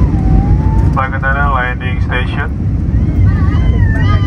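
Airbus airliner cabin noise on approach: a loud, steady low rumble of the engines and airflow. A high-pitched voice in the cabin is heard about a second in and again near the end.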